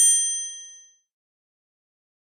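Notification-bell sound effect of a subscribe-button animation: one bright, high-pitched ding that rings out and fades away within about a second.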